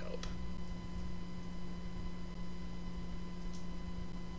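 Steady low electrical hum with faint whine lines, with two faint clicks, one just after the start and one near the end.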